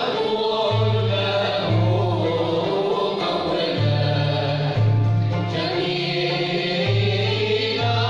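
Andalusian classical ensemble of ouds, violins and cellos playing while the group sings in chorus, over a low bass line that moves from note to note about once a second.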